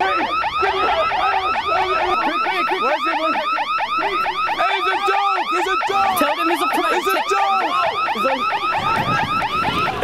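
Loud electronic alarm warbling rapidly, several rising-and-falling whoops a second, sounding without a break, with irregular lower cries underneath.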